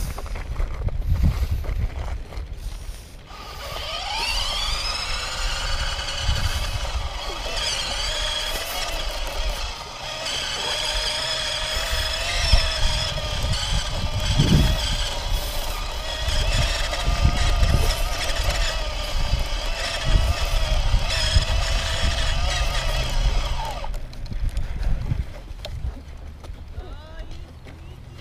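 Electric bike motor whining as it pulls away a few seconds in, its pitch rising and then holding steady while riding, over a low rumble, and cutting off near the end as the bike stops.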